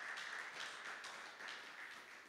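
Faint scattered applause from a congregation, fading away.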